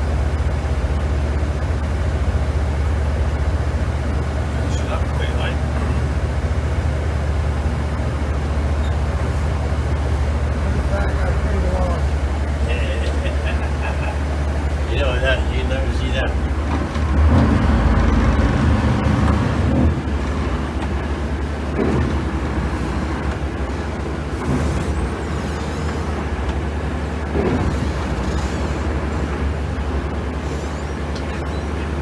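Lobster boat's diesel engine running with a steady low drone, swelling louder for a few seconds just past the middle as the boat manoeuvres. Voices can be heard faintly in the background.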